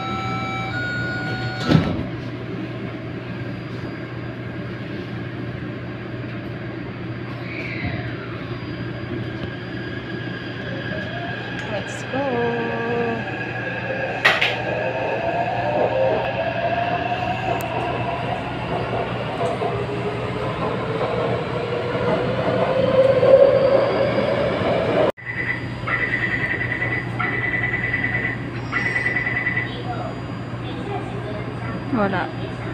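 Taipei Metro train heard from inside the car: the doors shut with a knock about two seconds in, then the train pulls away and runs through the tunnel, the motors whining as they rise and fall in pitch. After an abrupt break near the end, a high tone beeps on and off.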